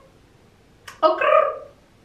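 A woman's voice saying "okay" about a second in, after a moment of quiet room tone in a small room.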